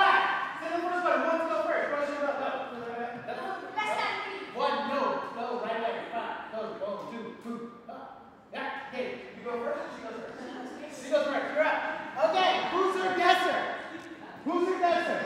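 People talking, with a short pause near the middle.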